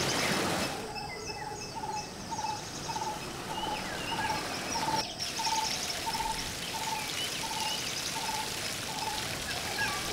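A bird calling one short, clear note over and over, a little more than twice a second, with fainter high chirps of other birds above it. The first second is a rushing noise that cuts off abruptly.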